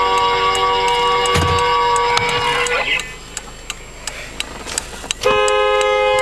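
Car horn sounding in two long, steady blasts: the first lasts nearly three seconds and stops abruptly; the second starts about five seconds in.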